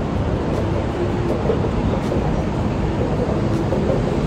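Elevated subway train running on the steel structure overhead: a loud, steady rumble.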